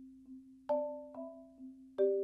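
Marimba played with four mallets. The left hand's outside mallet repeats one low note softly about twice a second. About two-thirds of a second in, and again half a second later, the right hand strikes louder two-note chords (double vertical strokes) that ring over it, showing dynamic independence between the hands.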